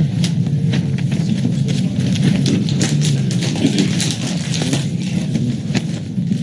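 Papers and objects being handled on a table near a microphone: irregular rustles, taps and small knocks over a steady low room hum.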